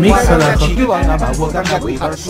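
Hip hop track with a heavy, pulsing bass beat and rapped vocals.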